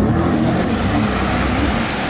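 Jet ski engine running under power nearby as the craft turns, its pitch wavering up and down, with water rushing from the jet.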